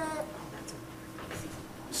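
A small child's high-pitched whining vocalisation trails off in the first moment, followed by a quiet pause with faint room hum and a few small clicks.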